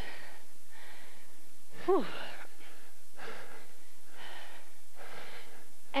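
Heavy, quick breathing of people winded by high-intensity exercise, caught close by a headset microphone: rhythmic hissing breaths about once a second, with a falling sighed "whew" about two seconds in.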